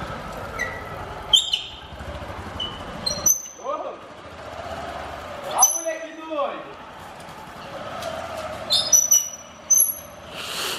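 Honda CG Titan 150 single-cylinder motorcycle engine running at low speed with a steady, quick exhaust pulse, cutting off suddenly about three seconds in. Faint voices and a few short high chirps or squeaks follow.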